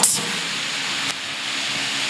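A steady hiss of background noise with a faint low hum under it, dipping slightly in level about a second in.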